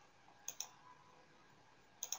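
A single computer mouse click about half a second in, heard as a quick press-and-release pair of sharp clicks, over near-silent room tone.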